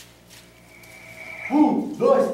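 Near quiet, then about one and a half seconds in several voices break out together into a loud group cry that rises and falls in pitch.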